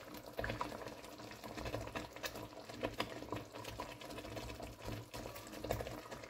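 Blended-tomato stew cooking in oil in a pot, bubbling steadily with many small pops.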